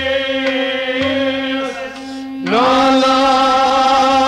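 Kashmiri devotional song: a male singer holding long, slightly wavering notes over a steady drone and a light beat. A louder new phrase begins with an upward glide about two and a half seconds in.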